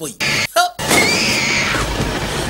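A woman screams: a loud, high-pitched scream starting about a second in and lasting nearly a second.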